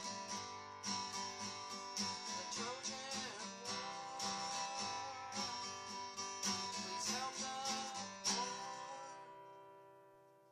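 Acoustic guitar strummed in a steady rhythm. Near the end a final chord is struck and left to ring, fading out.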